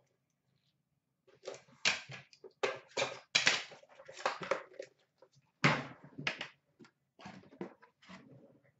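A string of sharp knocks and clatters, about a dozen over some six seconds, from a metal card tin and card packaging being handled and set down.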